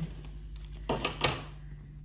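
Two brief rustling scrapes about a second in, as a cotton dish towel is picked up and handled, over a faint steady hum.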